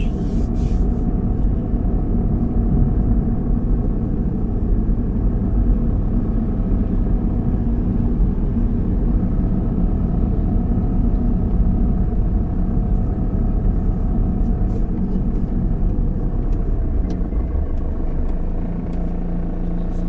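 Car driving along a city street, heard from inside: a steady low rumble of engine and road noise. Near the end it settles into a steadier hum.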